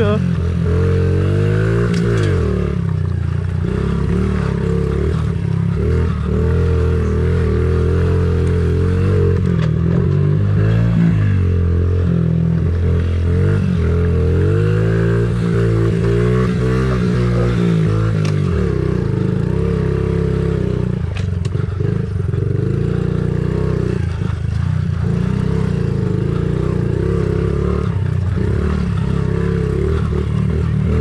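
Honda CRF50 pitbike's small single-cylinder four-stroke engine ridden hard around a tight dirt track. Its pitch climbs and falls again and again as the throttle is opened and closed through the corners.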